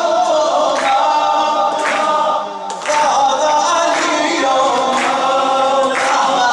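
Shia maddahi devotional singing: voices singing a sustained, wavering melody together without instruments, over a sharp beat about once a second. The singing dips briefly about halfway through.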